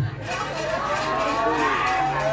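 A person's voice drawn out in one long, wavering call that slides in pitch and dips near the end.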